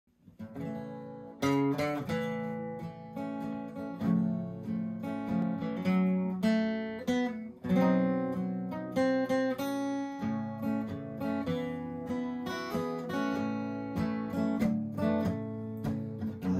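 Gibson J-50 acoustic guitar played solo: an instrumental intro of picked notes and strummed chords. It starts quietly, with the first strong strum about a second and a half in.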